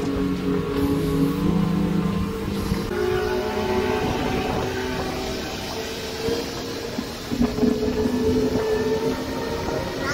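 Twin outboard motors running hard at planing speed, a steady engine drone that shifts pitch a few times, over rushing wind and water noise.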